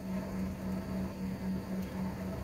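Steady low hum inside an airliner cabin on the ground after landing, a droning tone that swells and fades a few times a second over a low rumble.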